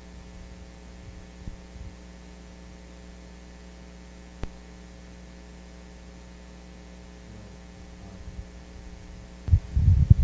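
Steady mains hum on the sound system's microphone line, with a few soft knocks and one sharp click about four seconds in. Near the end come loud low thumps from a handheld microphone being handled.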